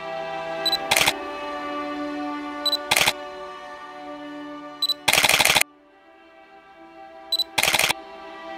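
Background music with held notes, overlaid by a camera shutter sound effect four times, about every two seconds. Each shutter is preceded by a short high focus-confirmation beep, and the third shutter is longer, like a short burst of shots.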